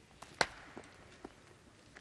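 Quiet arena hush: a low, steady background with one sharp click about half a second in and a few fainter taps after it.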